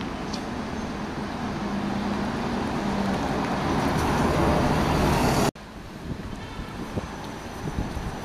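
Single-deck bus driving past close by, its engine running with a steady low hum that grows louder as it nears. It is cut off suddenly about five and a half seconds in, leaving quieter street traffic and wind on the microphone.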